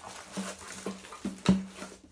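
Packaging being handled as a box is unpacked: a rustling of paper and card with several light knocks, the loudest about one and a half seconds in.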